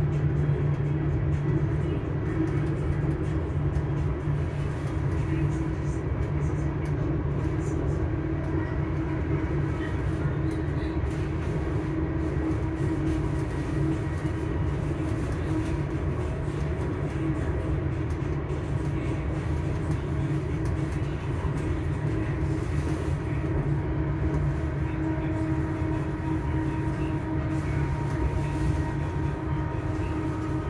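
Hitachi Class 385 electric multiple unit heard from inside while running at a steady speed: a constant hum and whine from the traction motors, holding a steady pitch, over the rumble of the wheels on the rails.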